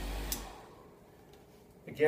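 Electric car buffer switched off: a click about a third of a second in, and its low motor hum dies away within about half a second, leaving near quiet.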